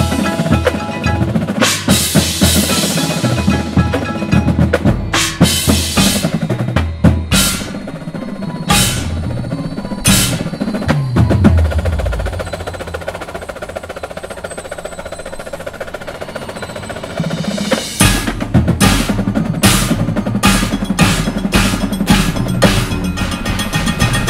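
Drum corps percussion section playing a fast, aggressive passage: marching snares, tenors and Yamaha bass drums with cymbal crashes, timpani and keyboard mallet percussion. It eases into a quieter, more sustained stretch about halfway through, then builds back with rapid drum strokes and repeated crashes.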